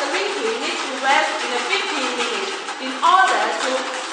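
Talking voices throughout; the stirring in the bucket is not clearly heard.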